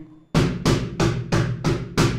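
Wooden cajón struck with bare hands on its front face in an even run of strokes, about three a second, starting shortly after the beginning: a double stroke roll, two strokes with each hand.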